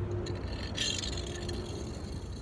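Hot Wheels die-cast toy car (2018 Camaro SS) pushed along parking-lot asphalt and let go, its small plastic wheels rolling with a brief scraping hiss about a second in, over a low steady rumble.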